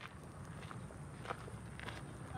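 Faint footsteps on a dirt path, a few soft steps about half a second apart.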